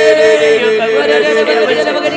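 A voice praying in tongues: a fast, unbroken stream of short repeated syllables chanted on a nearly steady pitch.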